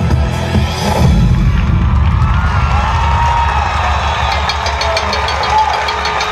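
Electronic dance music with a heavy beat stops about a second in, and a large crowd cheers and shouts over a low rumbling sound system.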